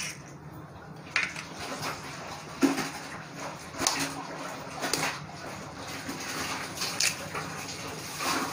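Eggs being cracked with the edge of a kitchen knife over a glass bowl: a handful of short sharp taps and clicks of blade and shell, spaced a second or so apart, as the shell is broken and pulled open.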